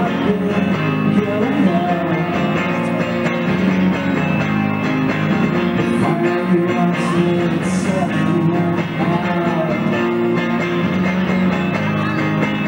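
Live rock band playing: electric guitar and bass with a sung lead vocal. It is an audience recording made on a portable Sony MiniDisc recorder, so the sound is rough and thick.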